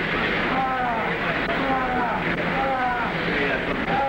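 A wounded man crying out in pain again and again: short, high cries that fall in pitch, more than one a second, over a steady background noise.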